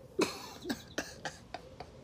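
A man laughing softly to himself: a breathy burst about a quarter second in, then several short, quiet chuckles.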